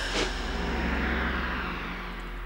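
Film sound effect: a loud rushing roar over a steady low hum, with a sharp hit a moment in.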